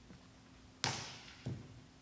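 Two sharp thuds about two-thirds of a second apart, the first louder, each ringing out briefly in a reverberant church sanctuary, made as someone steps up to and handles things at a wooden altar.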